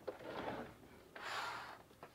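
A man's breathing close to the microphone: two soft breaths, the second brighter and about a second in.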